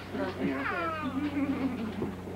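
A toddler's high-pitched squeal, starting about half a second in and gliding down in pitch for about half a second, over low adult voices and a steady low hum.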